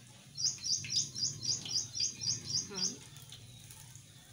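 A bird chirping: a quick run of about ten identical high chirps, roughly four a second, that ends about three seconds in.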